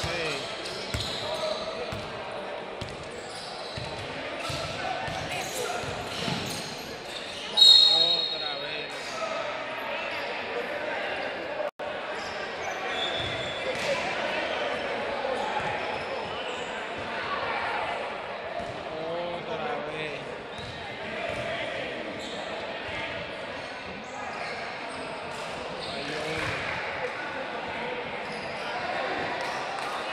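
Basketball game in an echoing gym: the ball bouncing on the court amid spectators' voices and shouts, with a loud referee's whistle about eight seconds in and a shorter whistle a few seconds later.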